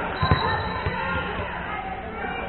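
A volleyball bouncing on a hardwood gym floor: two quick thuds near the start and a softer one just under a second in.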